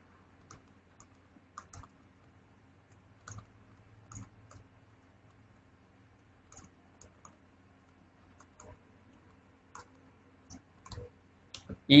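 Light, irregular clicks, about twenty spread unevenly over the stretch, made by pen or mouse input while handwriting is drawn onto the screen. A faint steady low hum sits underneath.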